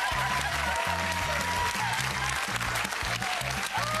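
Studio audience applauding over music with a steady, pulsing bass beat. A few voices whoop near the end.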